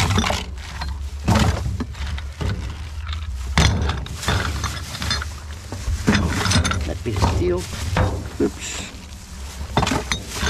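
Plastic bag rustling and glass bottles clinking as salvaged bottles are packed into the bag, with irregular handling knocks throughout.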